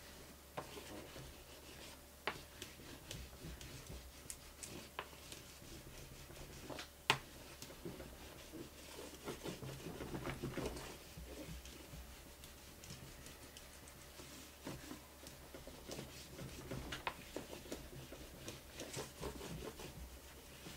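Faint scratchy rubbing of a small flat plastic paint cap pressed hard over paper laid in wet transfer medium, smoothing out wrinkles and excess medium, with scattered small clicks and knocks from the wobbling table; one sharp click about seven seconds in.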